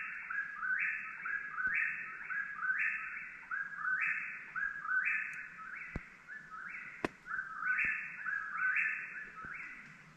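Eastern whip-poor-will singing its repeated 'whip-poor-will' call, about once a second without a break. One or two faint clicks are also heard.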